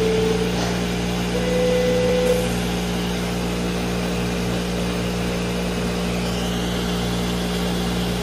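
Electronic beep tones used as the timing signal in a honey bee odour-conditioning trial: one beep ends about half a second in, and a second, slightly higher beep lasts about a second from about a second and a half in. Under them runs a steady low mechanical hum.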